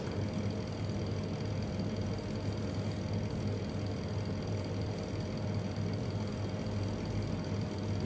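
Steady low machine hum with a faint, even high tone above it and no distinct knocks or cuts standing out.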